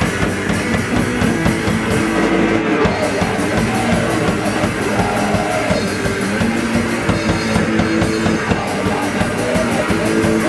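A d-beat hardcore punk band playing live at full volume: distorted electric guitar, bass and fast, driving drums, without a break.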